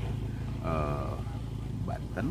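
Low, steady hum of a motor vehicle engine running nearby, with a brief drawn-out vocal hesitation a little over half a second in.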